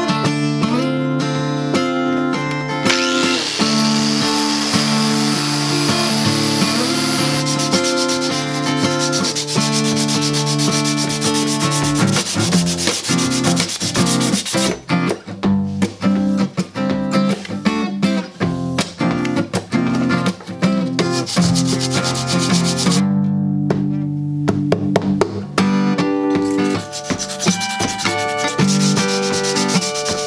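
Acoustic guitar music with steady chords, mixed with a scratchy rubbing sound of a rusty steel knife blade being sanded by hand.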